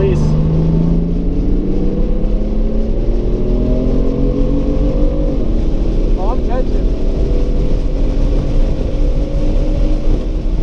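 BMW M car's twin-turbo straight-six heard from inside the cabin under hard acceleration. The engine note rises steadily for about five seconds, drops with an upshift of the dual-clutch gearbox, then climbs again, over steady road and wind noise.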